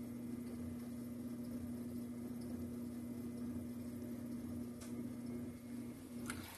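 Low, steady hum of an electric potter's wheel motor running while wet clay is being collared, with one faint click about five seconds in.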